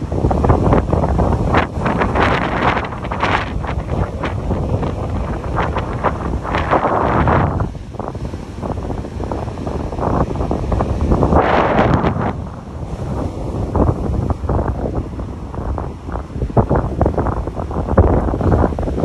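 Strong, gusty storm wind buffeting the phone's microphone in a heavy rumble, over rough surf breaking on the beach. Two louder rushes stand out, about seven and twelve seconds in.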